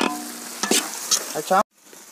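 Onion and spice masala sizzling in a large iron kadai while a long-handled ladle stirs and scrapes it around the pan. The sound cuts off suddenly about a second and a half in.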